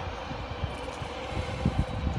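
Steady low background rumble with a faint steady hum, and a soft low bump near the end.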